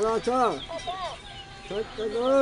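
Plush dancing-cactus mimic toy repeating words back in a high, warbling voice: a string of short syllables, each rising and falling in pitch, then another burst near the end.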